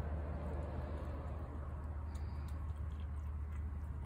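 A tabby cat chewing and licking up dry food off a wooden deck, over a steady low hum.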